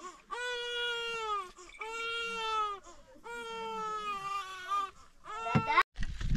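An infant crying: three drawn-out wails of about a second each with short breaths between, then a brief rising cry that cuts off suddenly near the end.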